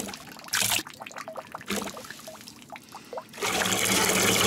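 A stream of urine splashing into a toilet bowl's water, uneven in force: a strong gush about half a second in, a weaker spattering stretch, then a strong steady stream again near the end.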